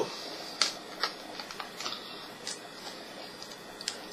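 Fingers picking at the plastic shrink-wrap on a CD jewel case: a scatter of small, irregular plastic clicks and ticks, the sharpest about half a second in.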